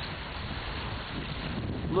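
Strong wind rushing over the microphone: a steady, even noise, heaviest in the low end.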